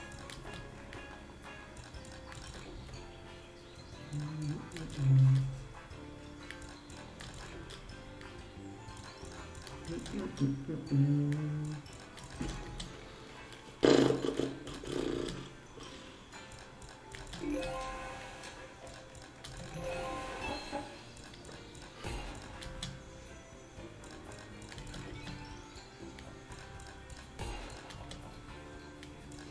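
Greedy Wolf video slot's background music and reel sound effects, with louder low swells about 5 and 11 seconds in and a sharp hit about 14 seconds in as the reels spin.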